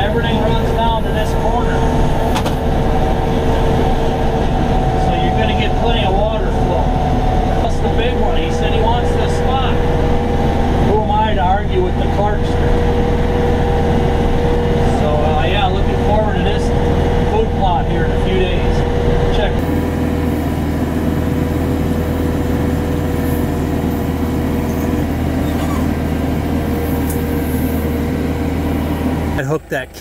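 Tractor engine running steadily, heard from inside the enclosed cab, with a man talking over it. Near the two-thirds mark a different steady engine drone takes over, still under a man's talk, and it stops just before the end.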